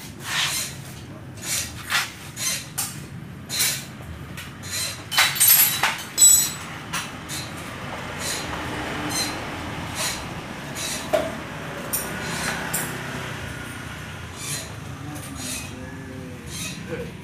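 Sharp clicks and knocks from hands handling parts and wiring connectors on a motorcycle, loudest in a quick cluster about five to six seconds in. After that a steady rushing noise runs underneath, with fewer, scattered clicks.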